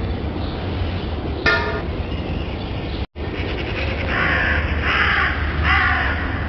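Crow cawing: one short caw about one and a half seconds in, then three harsh caws in quick succession near the end, over a steady low rumble. The sound cuts out briefly about three seconds in.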